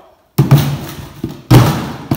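Two loud thumps about a second apart, each with a short fading tail, with a lighter knock between them: items being set down.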